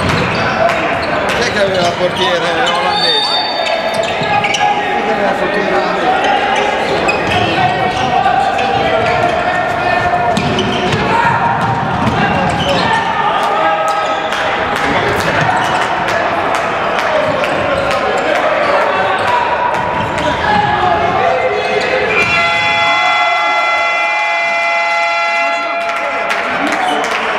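A handball bouncing on an indoor hall floor in play, with sharp knocks and players' and spectators' voices echoing in the large hall. A long steady tone comes in about four seconds before the end and holds.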